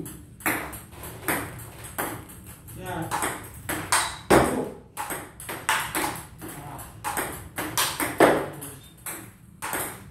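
Table tennis rally practice: a celluloid-type ping-pong ball clicking sharply against the bat and the table in a steady run of forehand strokes, about two clicks a second.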